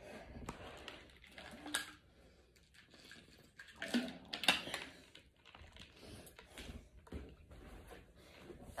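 Faint scattered clicks, taps and rustling of a person moving about and getting down onto an exercise mat, with a couple of brief louder bursts, the loudest about four seconds in.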